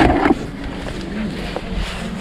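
A brief laugh, then a low, steady rumble of wind on the microphone of a body-worn camera.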